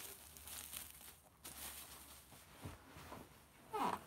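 Faint crinkling and rustling of plastic bubble wrap as a ceramic vase is handled and lifted out of its packing.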